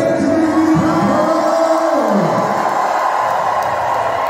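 Live vocal performance amplified through a PA, with the singer holding a long note that glides down about two seconds in, over a crowd cheering.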